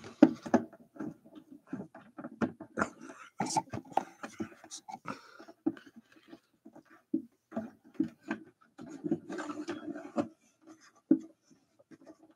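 Handling noise from a webcam being moved and brushed against a hoodie: irregular knocks, clicks and fabric rustling.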